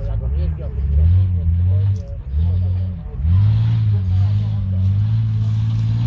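Engine of a lifted off-road 4x4 revving in three surges under load: two short ones in the first three seconds, then a third held steady at high revs for the last few seconds.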